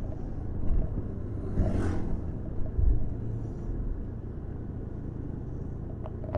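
Steady low road and engine rumble of a slow-moving vehicle in street traffic, with a brief louder rush of noise about two seconds in.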